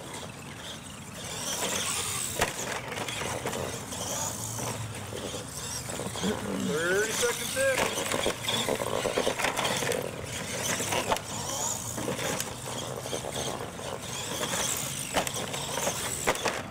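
Radio-controlled monster truck driving over turf and ramps, its motor whining up and down with the throttle, with a few sharp knocks as it hits the obstacles and lands.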